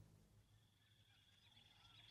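Near silence, with faint birdsong starting to fade in near the end.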